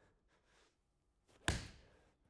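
Golf iron striking a ball off a hitting mat: one sharp crack about one and a half seconds in, fading quickly.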